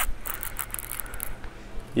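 Faint clicks from a spinning reel as a hooked fish is played on a bent rod, sharpest at the very start and thinning out within the first second, over a low steady hum.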